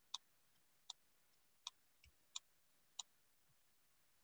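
Near silence broken by faint, sharp ticks, a click roughly every three-quarters of a second, with a soft low thump about two seconds in.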